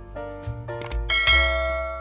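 Background music with subscribe-button sound effects: a quick mouse click a little before a second in, then a bright bell chime that rings on.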